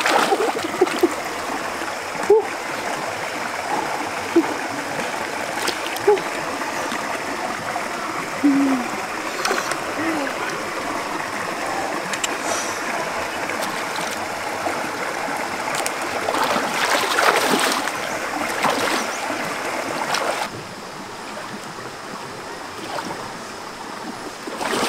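A shallow rocky stream running steadily, with hands splashing and thrashing in the water while grabbing for fish, loudest in the first second and again around seventeen seconds. The water sound drops to a quieter run for the last few seconds.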